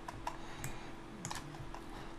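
A few scattered keystrokes on a computer keyboard, sharp single taps spread over the two seconds, over a faint steady hum.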